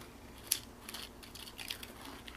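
One sharp click about half a second in, then several light ticks, from the powdered DIY candy kit being handled and wetted with water as the mix starts to fizz.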